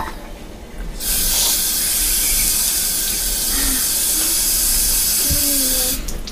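A bathroom tap running hard into a sink, starting suddenly about a second in and stopping near the end.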